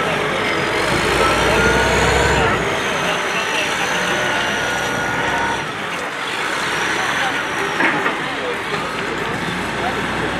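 A heavy earthmoving machine running, with high whines that rise and fall, over the chatter of a crowd.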